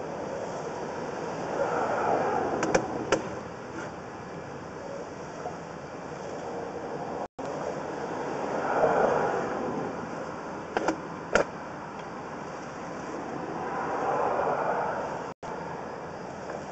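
Sewer inspection camera's push cable being pulled back out of the line, heard as three slow swells of rushing noise with a couple of pairs of sharp clicks.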